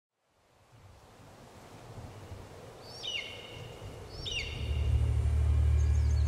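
Outdoor night ambience fades in from silence, with two short bird calls about three and four seconds in. Then a low steady drone swells up and holds near the end.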